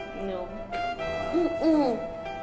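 Soft background music with a steady held note, over which a voice makes two or three short hums that rise and fall in pitch in the second half.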